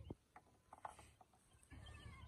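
Near silence broken by a few faint, irregular clicks, mostly in the first second.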